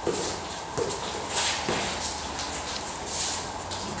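Shuffling and clothing rustle as a man lowers himself from all fours to lying face down on a rubber gym mat, with a few soft knocks in the first two seconds and footsteps of someone getting up and moving beside him.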